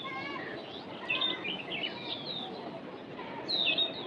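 Several birds chirping, many short chirps overlapping, with a slightly louder run of chirps near the end.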